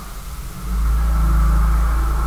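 A steady low rumble that comes in about half a second in and holds, with a faint thin whine above it.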